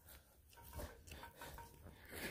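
Near silence: quiet room tone with a few faint, soft rustles.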